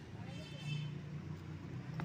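A low, steady engine-like hum in the background. About half a second in there is a brief high-pitched sound.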